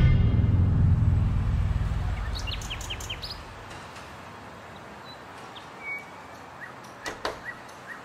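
A low rumble left over from the intro music dies away over the first few seconds. After it comes a faint outdoor ambience with short bird chirps, a few at a time, most of them near the middle and toward the end.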